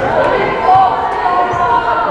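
Basketball dribbled on a hardwood gym floor, the bounces heard over the echoing hum of voices in the hall.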